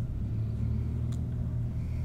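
A steady low rumble with a faint click about a second in.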